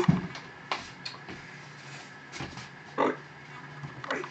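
Faint, scattered handling sounds as a person moves about and reaches into a shelf: a few light knocks and rustles, with a slightly louder short sound about three seconds in.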